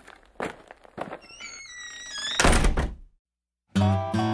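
Logo sting sound effects: a few soft thuds, a wavering rising tone and a loud thunk, then a brief dead silence before acoustic guitar music starts near the end.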